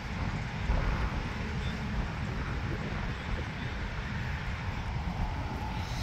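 Steady low outdoor rumble with no distinct event, uneven in level.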